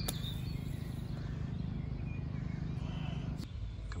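Steady wind rumble on the microphone with faint bird chirps. A single sharp strike right at the start is a golf club splashing into bunker sand, and there is a short click about three and a half seconds in.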